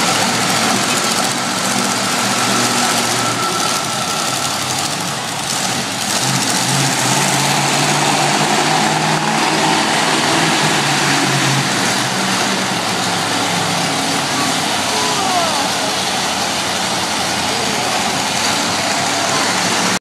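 Monster truck engine running, its pitch shifting up and down, over a steady crowd din in a large indoor arena.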